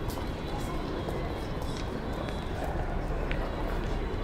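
Busy city street ambience: a steady low rumble under indistinct voices of passers-by, with scattered sharp clicks.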